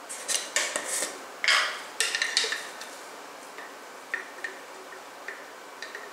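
Glass jar of chopped garlic being handled and opened, with a wooden spoon scraping and knocking inside it: a run of sharp clicks and scrapes in the first two and a half seconds, then a few lighter taps.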